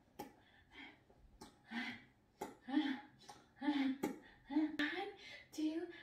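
Short wordless vocal sounds, roughly one a second, each a brief voiced syllable, several set off by a sharp click.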